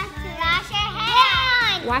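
Young children's voices calling out excitedly, rising and falling in pitch, over background music with a steady beat.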